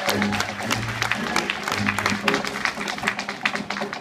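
Tap shoes striking a wooden tap board in quick rhythmic runs of sharp clicks, over accompanying music with sustained low notes.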